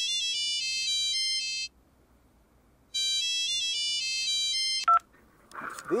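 Mobile phone ringtone announcing an incoming call: a high chiming melody plays twice, each run about two seconds long with a pause between. A short beep follows near the end.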